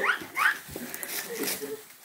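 A dog whining, a couple of short rising whimpers near the start, with light rustling of wrapping paper.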